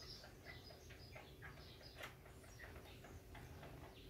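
Near silence, with faint, scattered bird chirps and small ticks in the background.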